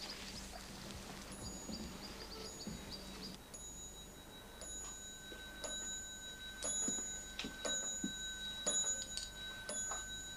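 A clock ticking about once a second in a quiet room, each tick with a short high ring. In the first three seconds a fast, high chirping runs in the background.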